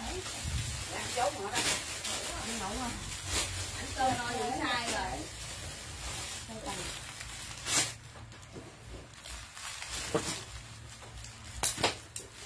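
Plastic bags of packaged clothing rustling and crinkling as they are handled and shuffled through a pile, with a few sharper crackles.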